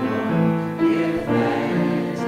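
A church congregation singing a hymn together, with long held notes that move from one pitch to the next.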